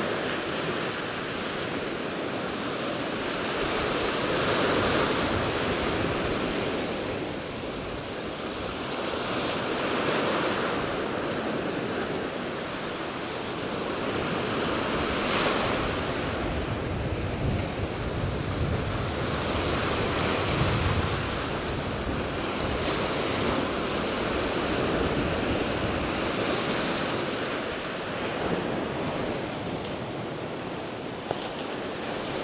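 Black Sea surf breaking on a pebble beach in choppy, storm-stirred water, the rush swelling and easing every five seconds or so. Wind buffets the microphone, most of all a little past halfway.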